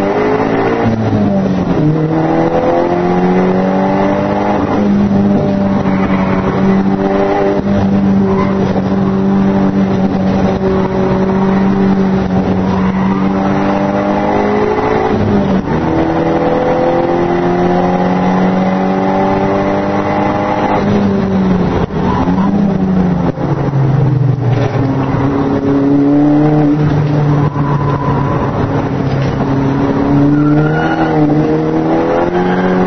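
Nissan S13's engine heard from inside the cabin, pulling hard on a track. The revs drop about a second in, hold steady, dip and climb again about halfway, fall back around two-thirds of the way through and rise again near the end.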